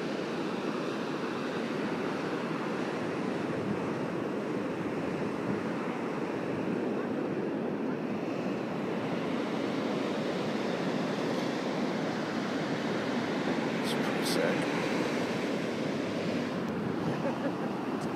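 Ocean surf washing up a sandy beach: a steady rushing wash of waves at the waterline.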